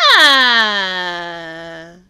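A woman's voice in one long drawn-out vocal cry that starts high and slides steadily down in pitch, stopping after about two seconds.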